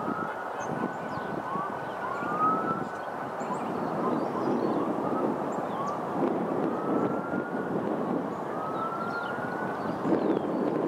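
A distant siren, its pitch gliding upward again and again, over a steady rumble of traffic, with faint small-bird chirps.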